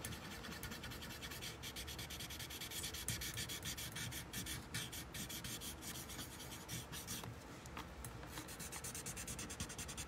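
Graphite pencil shading being rubbed on a small paper drawing tile to soften and blend it: a faint, steady scratchy rubbing made of many quick short strokes.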